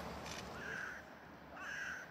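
A bird cawing twice, each call short and harsh.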